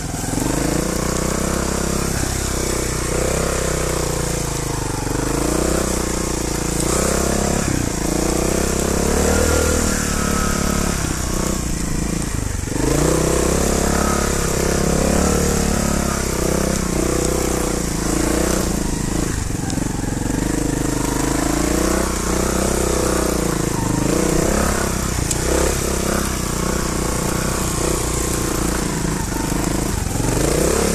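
Trials motorcycle engine working up a climb, its pitch rising and falling repeatedly as the throttle is opened and closed.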